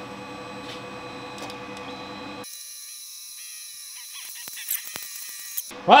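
Steady machine hum from the welding printer rig, several steady tones over a low, even pulsing. About two and a half seconds in, the sound cuts abruptly to a thinner, high whine with a few faint ticks until near the end.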